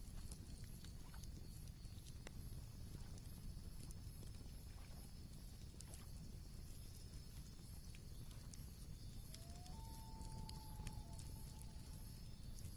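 Faint crackling of a wood campfire: scattered sharp pops and clicks over a low steady rumble. About ten seconds in, a thin whistle-like tone rises and then holds briefly.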